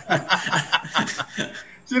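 Men chuckling and laughing in short, choppy bursts.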